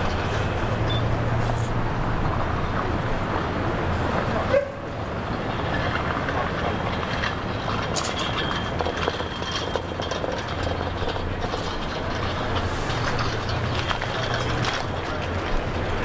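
Steady outdoor background noise with a constant low hum underneath, and one sharp click about four and a half seconds in, followed by a brief drop in level.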